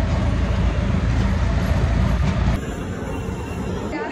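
Train running, a loud, steady low rumble that cuts off suddenly about two and a half seconds in, leaving a quieter background hum.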